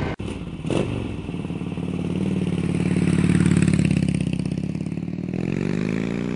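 A 2005 Harley-Davidson Sportster 1200 Custom's air-cooled 1200cc V-twin is running through its chrome staggered dual exhaust. It is revved up slowly and eases back down once, then starts rising again near the end. A brief dropout and a short clatter come in the first second.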